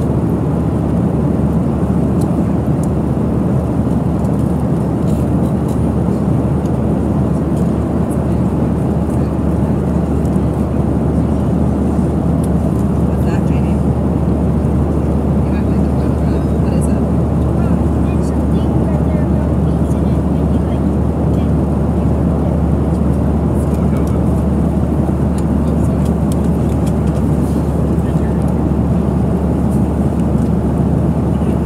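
Steady jet airliner cabin noise in flight: the even, low drone of engines and rushing air inside a Boeing 737 cabin.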